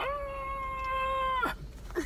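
A person's voice holding one high-pitched wailing cry for about a second and a half, then breaking off abruptly.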